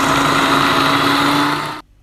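Electric food processor running, its blade blitzing a thick mix of white beans, peanuts and chopped vegetables. The motor gives a steady hum that rises slightly in pitch, then it is switched off and stops abruptly near the end.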